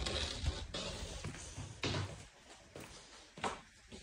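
Apple-tree leaves and branches rustling as an apple is picked by hand. The rustle fades after the first second, and a few short snaps come later.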